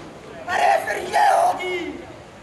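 A group of performers shouting together in unison: two loud shouts about half a second and a second in, trailing off into a softer falling cry near the end. The shouts are part of a repeated chant.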